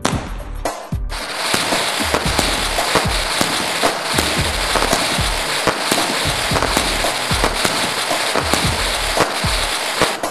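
Rang Chakkar multi-shot fireworks cake firing: starting about a second in, continuous loud hissing and crackling with a quick run of thumps as it shoots its spinning shells up one after another.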